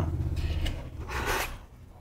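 Cardboard rubbing and scraping as a small paper battery box is opened, with a brief louder rasp a little over a second in.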